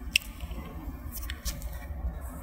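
Handling noise: a few soft clicks and rustles, the sharpest just after the start, over a steady low rumble.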